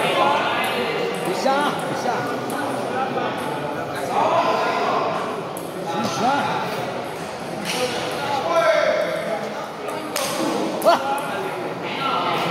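Table tennis ball clicking off bats and the table in a doubles rally, heard as a few sharp, separate clicks in a large echoing hall. The voices and calls of players and spectators go on throughout.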